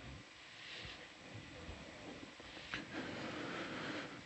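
Faint steady hiss of background noise on the audio feed, with one soft click a little under three seconds in.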